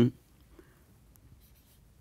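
Faint scratching of a marker writing on a whiteboard, a few light strokes.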